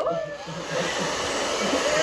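Handheld hair dryer blowing onto a durag over the hair; the rush of air grows louder about half a second in, then runs steadily.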